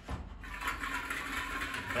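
Plastic draw balls clattering against each other and the glass bowl as a hand stirs through them to pick one out, starting about half a second in.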